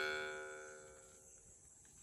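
Deep baritone mouth harp, the Alpha vargan by Dimitri Glazyrin, ringing out on its last plucked note: a steady drone with clear overtones that fades away within about a second.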